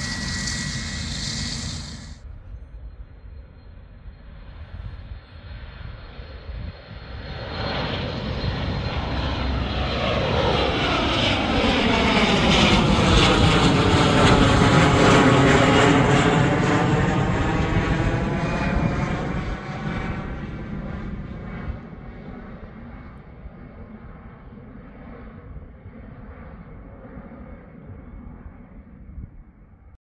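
A Bombardier Challenger 350 business jet's twin Honeywell HTF7350 turbofans at take-off power. A steady hiss cuts off about two seconds in; the jet noise then builds from about seven seconds in and is loudest as the jet climbs past overhead, with a sweeping, swirling tone as it goes by. It fades away over the last ten seconds.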